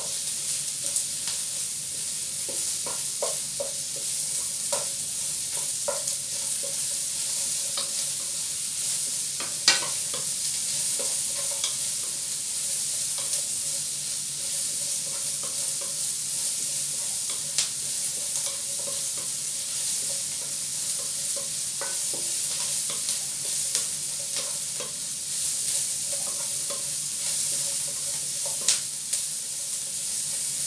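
Sliced onions sizzling in rendered chicken fat in a wok, stirred with a wooden spatula that scrapes and now and then knocks against the pan. The sizzle is steady; the sharpest knocks come about ten seconds in and near the end.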